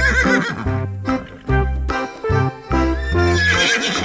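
Background music with a steady bass line, overlaid by a horse whinnying sound effect at the start and again near the end.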